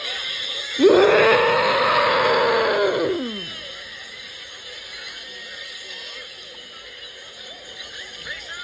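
A long, loud high-pitched yell from a cartoon voice, held for about two seconds and gliding down as it dies away, over a faint jumble of many cartoon soundtracks playing at once.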